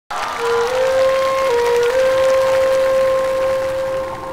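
Audience applause under a long held bamboo flute note. The note steps up and back down a little in the first two seconds, then holds steady.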